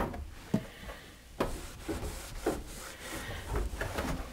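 A cloth rag rubbing over the surfaces of a kitchen cabinet, with a few light knocks, the sharpest about a second and a half in, as a cabinet door is handled and opened.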